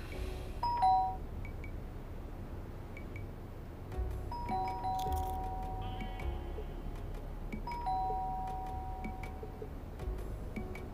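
Electric doorbell chiming a two-note ding-dong, high then low, three times: a short one about half a second in, then two more with longer ringing notes around four and eight seconds in. Soft background music runs underneath.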